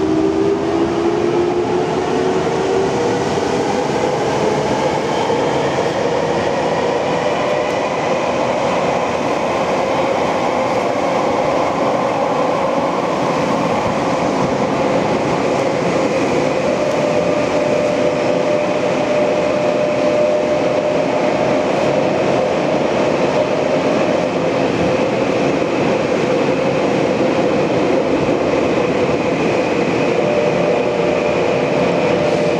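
Tokyo Metro 6000-series subway train heard from inside the car. The traction motors whine, rising in pitch as the train accelerates away from the station over the first several seconds, then settle into a steady tone over continuous wheel and tunnel running noise.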